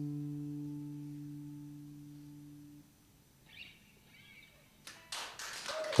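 A final electric guitar chord rings out and fades, cutting off about three seconds in. Near the end, applause starts up.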